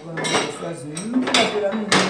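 Metal kitchenware clattering against a metal cooking pot in about three sharp strokes.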